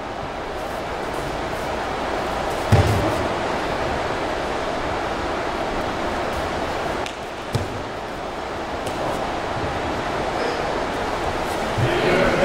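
Thumps of a training partner being thrown onto a padded mat in aikido: a heavy one about three seconds in and a lighter one about halfway through, over the steady hum of a large hall.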